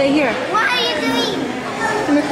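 Excited voices of children and adults talking over one another, with a high-pitched wavering child's squeal a little before the middle.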